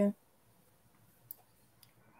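Two faint keyboard clicks, one about a second in and one near the end, as code is typed into a notebook.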